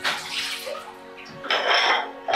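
Tap water running and splashing into a kitchen sink as dishes are washed, loudest in a burst near the end, over background music.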